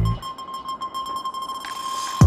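Background music in a break in the beat: the drums drop out and a single high note is held.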